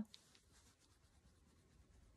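Near silence: room tone, with a few faint soft rustles just after the start.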